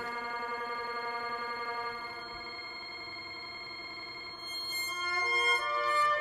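Live-sampled trumpet sound played back and electronically processed by the mutantrumpet's computer, granular processing among the effects: a sustained, layered drone of steady tones. It drops in level about two seconds in, and new notes step in near the end.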